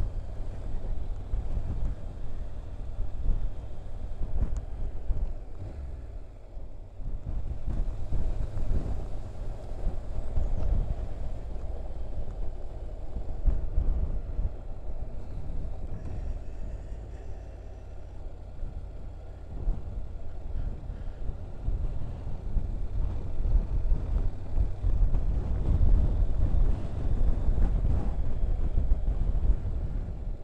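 Wind buffeting the microphone of a moving motorcycle in gale-force gusts: a low, rumbling roar that surges and eases, dipping around a quarter and again around halfway in, and loudest near the end.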